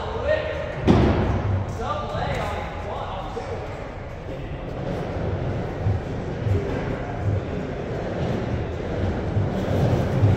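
Skateboard wheels rolling over a wooden pump track, a low rumble that swells over each roller, with one loud thud about a second in.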